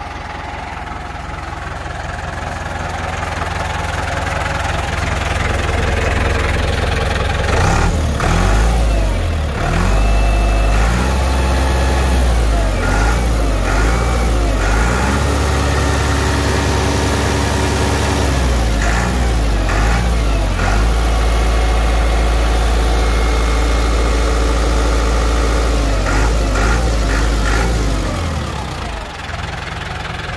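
New Holland TS90 tractor's diesel engine running. It picks up from idle over the first few seconds and holds at higher revs with its pitch rising and falling, then drops back toward idle near the end.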